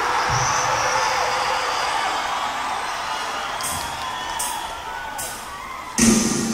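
Arena concert crowd cheering and whooping between songs, a dense steady noise that slowly dies down.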